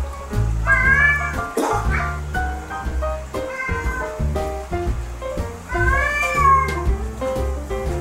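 Background music with a domestic cat meowing twice over it: one rising-and-falling meow about a second in and another about six seconds in.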